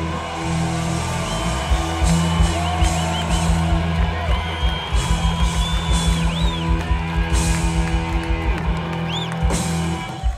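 Live rock band playing loud: electric guitar lead notes bending in pitch over bass and drums, with a fast run of drum hits in the second half as the song drives toward its end.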